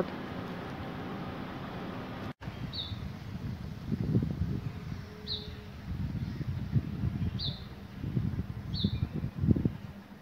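A small bird calling outdoors: four short, high chirps a couple of seconds apart, over an uneven low rumble.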